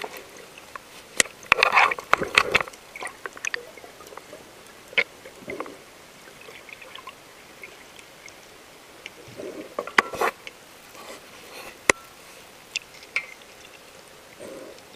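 Underwater sound: a steady hiss broken by scattered sharp clicks and knocks and short noisy bursts of water movement, loudest in a cluster about two seconds in and again around ten seconds in.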